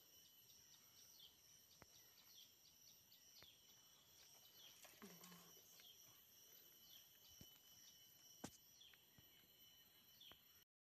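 Faint forest ambience: a steady high insect drone with short descending bird chirps repeating over it, and a few sharp clicks, the loudest about eight and a half seconds in.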